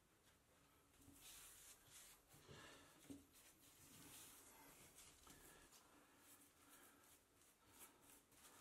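Near silence, with faint brushing and scratching from a paintbrush spreading liquid waterproofing compound over reinforcing tape where a shower wall meets the tray.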